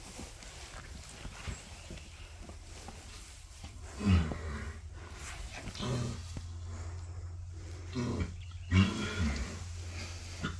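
A foaling mare groaning as she strains to push her foal out: several short, low groans, the loudest about four seconds in and more near the end.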